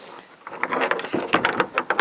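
Fishing rod and reel being handled: a dense run of irregular mechanical clicks and knocks, with a ratcheting quality, starting about half a second in.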